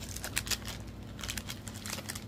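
Clear plastic wrapping crinkling in short, irregular bursts as hands handle and shift plastic-wrapped mirror disco balls.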